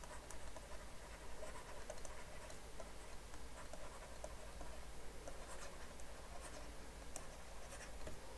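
Stylus writing by hand on a tablet: faint scratching with many small ticks as the tip strokes and lifts.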